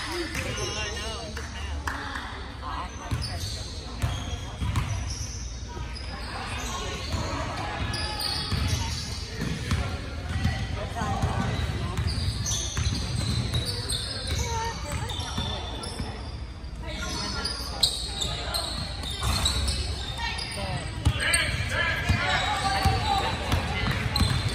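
A basketball bouncing on a hardwood gym floor during play, with indistinct voices of players and onlookers echoing in the large hall.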